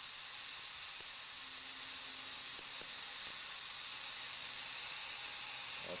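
Steady high-pitched hiss of corona discharge from a high-voltage ion lifter powered up, with a few faint ticks.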